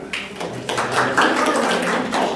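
Seated audience clapping briefly, a quick run of many overlapping claps that starts just after the pause begins.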